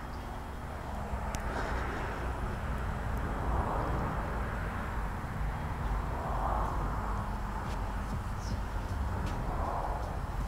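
Steady low background rumble with a soft hiss, swelling gently now and then, and one faint click a little over a second in.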